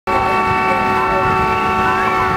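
A horn sounding one long, steady blast of several tones at once, loud and unwavering.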